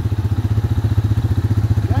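ATV engine running steadily, a rapid even pulsing with no revving.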